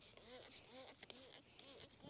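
Faint, short squirts from a handheld trigger spray bottle, in otherwise near silence.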